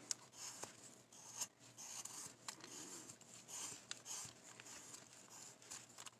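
Carving knife slicing chips from a basswood block: faint scraping cuts with a few light clicks.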